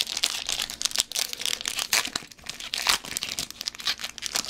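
Foil Pokémon XY booster pack wrapper crinkling and tearing as it is handled and opened by hand, with many quick irregular crackles.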